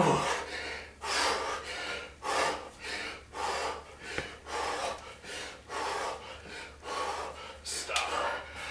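A man breathing hard and in rhythm while swinging a kettlebell, a sharp puff of breath with each swing, about one to two breaths a second: the heavy breathing of a high-intensity workout's final round.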